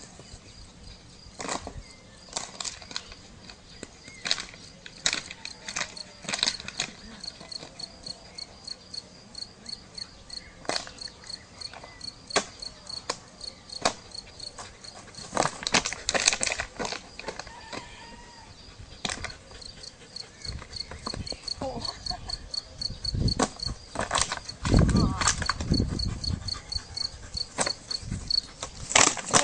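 An insect chirping in a steady, rapid, high-pitched pulse, over scattered short clicks and knocks. Louder low thumps and rumbling come in a few seconds before the end.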